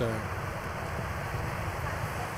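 Steady low rumble of wind and rolling road noise on a bicycle-mounted camera's microphone, with a faint steady high whine.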